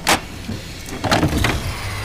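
Entrust Sigma ID card printer powering up: a sharp click just after the start, then a short motorized whir about a second in, with a faint falling tone near the end.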